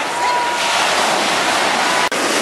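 Mediterranean surf breaking and washing up a sandy beach: a steady, even rush of waves.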